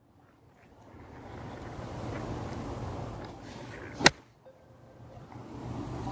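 A lob wedge strikes a golf ball once on a short 40-yard pitch: a single sharp, crisp click about four seconds in, over steady outdoor background noise.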